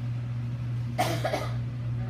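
A single short cough about a second in, over a steady low hum.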